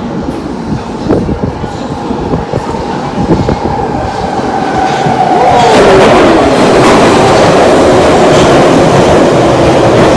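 London Underground tube train arriving at a station platform out of the tunnel: rumble and rail clatter growing louder over the first half. A falling whine follows as the train slows past the halfway point, then a steady loud rush as the carriages run alongside the platform.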